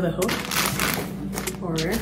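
Thin plastic packaging crinkling and rustling irregularly as it is handled.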